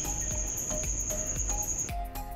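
A cricket's high, steady trill, cut off abruptly near the end, with faint short tones underneath.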